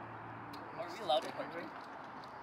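Quiet, brief talking about a second in, over a low steady hum.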